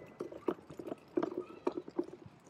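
Footsteps on asphalt with a stroller being pushed: an irregular run of light knocks and rattles, several a second.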